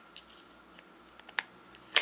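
Small plastic clicks as a battery is pressed into the battery compartment of an LG mobile phone: a light click about one and a half seconds in, then a sharper, louder snap at the end as the battery seats.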